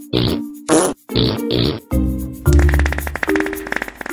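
A man coughing and gasping in about five short rough bursts over the first two seconds, over background music with held notes; from about halfway the music carries on alone with a fast rattling run over a deep bass note.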